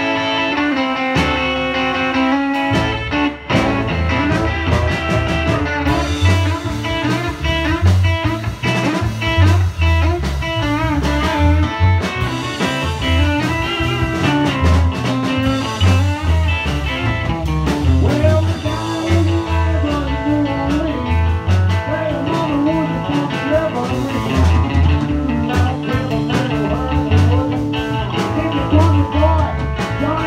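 Live blues band playing on electric guitar, bass guitar, drum kit and saxophone, with held melody lines at first and the bass and drums coming in fully a few seconds in.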